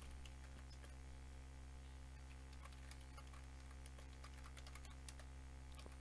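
Computer keyboard being typed on in faint, irregular keystrokes as a terminal command is entered, over a steady low hum.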